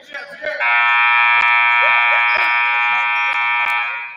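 Gym scoreboard horn sounding one long, steady blast of a bit over three seconds, starting about half a second in, in a large echoing gym. It marks the end of a timeout, with the players heading back onto the court.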